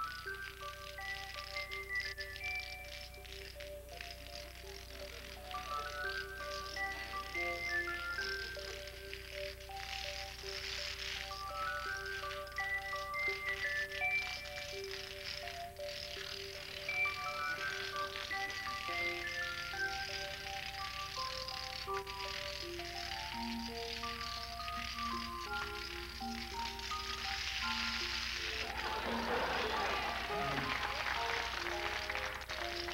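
Long chains of toppling dominoes, a continuous fine clatter of small clicks that grows a little louder near the end, under a melody of single notes stepping up and down.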